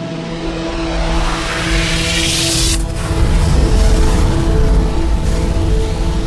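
Logo sting: a rising whoosh that swells in brightness and cuts off sharply about three seconds in, over a held musical drone chord and a deep rumble that grows louder after the cut.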